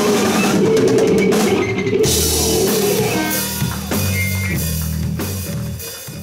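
Live rock band playing, led by a drum kit with cymbal crashes, over a held electric guitar note and then steady low bass notes. The music fades out near the end.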